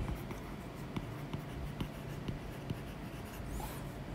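A stylus writing on a tablet's glass screen: faint, scattered taps and light scratches as a word is handwritten.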